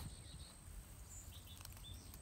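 Faint outdoor ambience: a low rumble on the microphone, with a few faint short bird chirps a little past the middle and a thin steady high tone.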